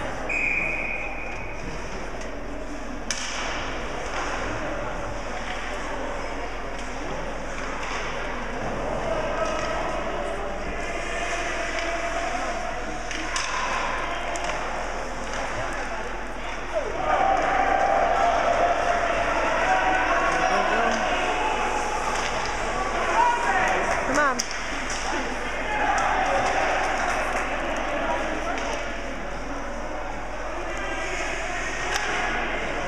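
Ice hockey game sounds in a rink: indistinct shouting and chatter from players and onlookers, louder in the second half, with occasional knocks of sticks and puck against the boards.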